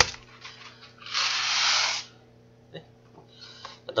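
Dry macaroni poured from a cardboard box into a pot of boiling water: a rushing rattle lasting just under a second, followed by a few faint clicks.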